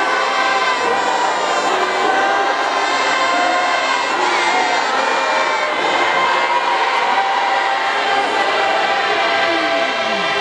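A large apostolic (mapostori) congregation singing a hymn together, many voices holding long notes in chorus.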